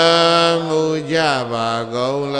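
A man chanting a Burmese Buddhist chant in long, drawn-out syllables on a steady pitch, the second syllable settling a little lower.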